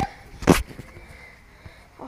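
A single short burst of handling noise on a handheld camera's microphone about half a second in, as the camera is fumbled with, followed by quiet.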